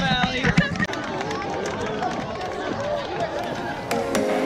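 Crowd of people chattering, with one voice speaking close by in the first second.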